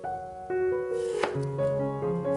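A kitchen knife slicing through a doenjang-pickled radish onto a wooden cutting board, one crisp cut a little past halfway, under background music with piano-like notes.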